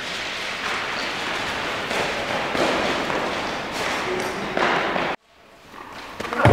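Unprocessed live sound from a handheld camera's microphone: a loud, steady hiss-like noise with a few scattered thumps and taps. It cuts off abruptly about five seconds in, and a quieter noise rises after it.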